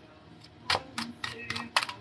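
Tarot or oracle cards being handled while being drawn for a reading: a few sharp card clicks and snaps, the strongest about three-quarters of a second in and near the end.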